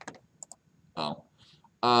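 A few quick clicks of computer keys in the first half-second, then a brief vocal sound about a second in and a spoken "uh" near the end.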